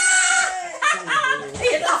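A small group laughing and shrieking with excitement, voices overlapping, with one drawn-out high cry at the start and shorter bursts after it.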